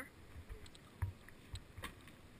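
Mountain bike running fast down a paved road: an uneven low rumble and buffeting, with two sharp rattles, one about a second in and one near the end.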